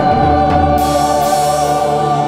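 Choral music: a choir holding a long chord over instrumental backing, with a cymbal wash ringing in from about a second in.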